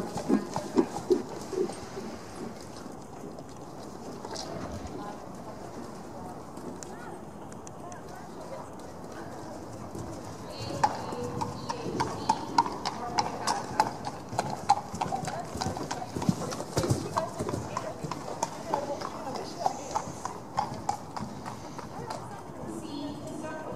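Horse's hooves striking sand arena footing at a trot, an even beat that grows louder and more regular about halfway through.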